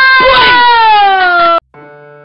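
A child's voice in one loud, long cry held on a single note, sliding slightly down in pitch and cut off abruptly. Soft electric piano music begins just after.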